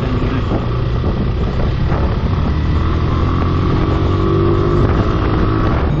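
Motorcycle engine running as the bike is ridden along and slows down, with wind noise on the bike-mounted camera's microphone.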